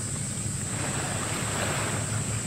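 Steady low hum of a destroyer escort under way at a distance, under a hiss of wind and water that swells for about a second near the end.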